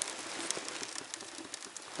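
Kindling fire crackling in the open firebox of a small iron wood stove: a low, even hiss with many small snaps.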